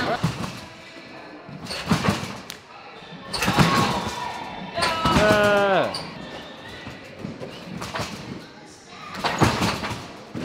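Irregular dull thuds of people bouncing on an in-ground trampoline bed and landing on foam crash pads, echoing in a large gym hall, with voices calling out partway through.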